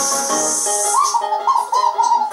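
Music from a TV channel promo. About a second in, a melody of short, swooping whistle-like notes comes in over held chords.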